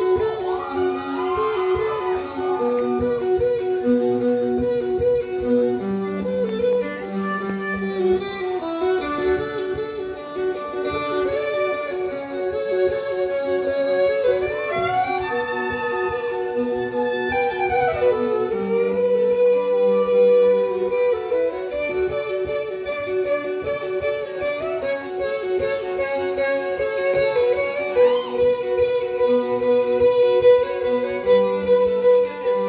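Pickup-amplified violin played live over its own looped layers: a bowed melody above a repeating pattern of accompanying notes that comes round every twelve seconds or so. Around the middle the violin climbs in a long run up to high notes and comes back down.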